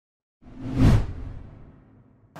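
Whoosh transition sound effect with a deep low rumble underneath. It comes in suddenly about half a second in, swells to a peak near one second, then fades away over about a second.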